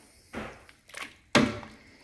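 Metal spoon stirring thick vegetable soup in a stainless steel pot, knocking against the pot a few times, with one sharper knock a little past halfway.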